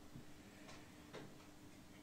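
Near silence: room tone with a faint steady hum and two faint clicks a little under half a second apart, about a second in.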